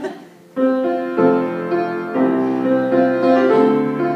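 Grand piano playing a solo accompaniment passage between sung phrases: after a brief lull, chords come in about half a second in and change roughly once a second.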